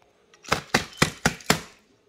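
A hard plastic toy engine knocking against a chest freezer's plastic rim: five or six quick sharp knocks, about four a second, over about a second.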